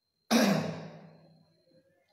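A man's voiced sigh, starting suddenly about a third of a second in and trailing off over about a second.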